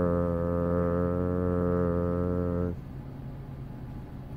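A low voice holding one long, steady chanted note, a drone with no change in pitch, that stops about two and a half seconds in; a quieter steady hiss is left after it.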